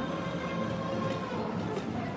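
Jeopardy slot machine's mechanical reels spinning, with a steady electronic tone from the machine that fades about a second and a half in as the reels come to rest.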